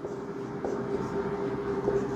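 Marker pen writing on a whiteboard, with faint strokes and taps over a steady electrical or fan-like background hum.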